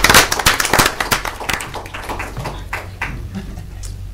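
A small group applauding, the clapping loudest at the start and dying away over the first couple of seconds.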